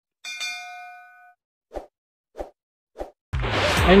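Subscribe-button animation sound effect: a bell-like ding that rings out and fades over about a second, followed by three short soft pops about 0.6 s apart. Background music starts just before the end.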